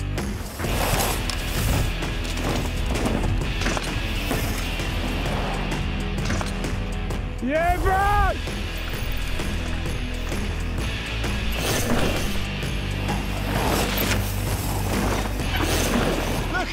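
Background music mixed with mountain bike riding on dry dirt trails: tyres skidding and scrabbling through loose dust and rock in short noisy bursts. A rider gives one loud rising-and-falling shout about eight seconds in.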